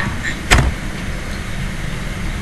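Steady low rumble of background noise with no speech, and one sharp click about half a second in.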